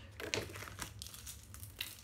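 Packaging crinkling as a makeup brush is handled, a run of irregular small crackles.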